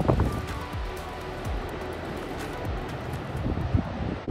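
Soft background music with a few held notes, over low wind noise on the microphone.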